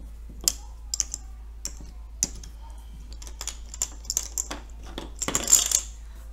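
Small plastic counters clicking against each other and the tabletop as they are picked up and set down. About five seconds in there is a louder, quick run of clicks as they are swept together into a pile.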